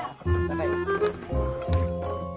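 Background music: held tones over a low beat that recurs about every second and a half.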